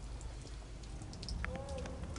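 Faint outdoor background noise: a low rumble with scattered light ticks, and a faint short tone that rises and falls about three-quarters of a second long, partway through.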